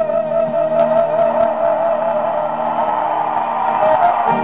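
Live band music with strummed guitar and sustained chords under a long, high held note with vibrato that fades near the end.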